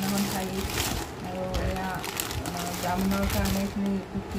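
Plastic bags and packets crinkling and rustling as they are handled, under a voice holding long, steady notes.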